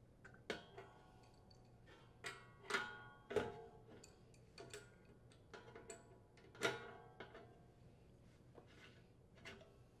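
Faint metallic clicks and clinks of an adjustable wrench on the steel set screw and hub of an air conditioner condenser fan blade: a dozen or so short strikes, some with a brief ring, the clearest about three seconds and about seven seconds in.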